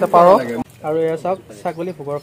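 A person talking, in short bursts of speech.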